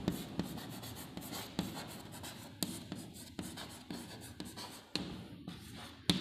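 Chalk writing on a chalkboard: a run of short, irregular scratches and taps as letters are stroked out.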